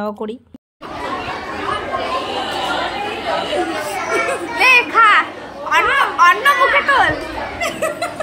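Overlapping chatter of a group of women, girls and a young child, several high-pitched voices rising above a crowded murmur. It starts suddenly about a second in, after a short gap.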